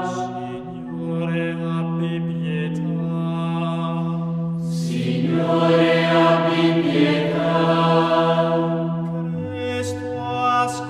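Choral chant music: a choir singing slowly in long held notes, with a new phrase starting about halfway through.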